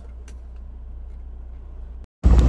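Steady low rumble inside a truck cab while driving on a highway: engine and road noise.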